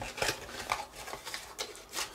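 A small cardboard box being opened by hand: a scatter of light taps, clicks and rustles of card and paper as the lid flap is lifted and the instruction sheet is drawn out.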